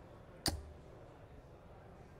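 A single steel-tipped dart striking a Unicorn bristle dartboard: one sharp hit about half a second in.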